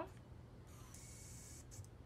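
Bebionic myoelectric prosthetic hand's small finger motors whirring faintly for about a second as the hand opens out of the pointing grip.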